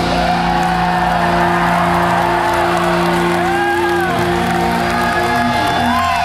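A rock band's last chord held and ringing out as steady sustained guitar tones, the cymbal wash dying away about half a second in. Audience whoops and whistles rise and fall over it several times.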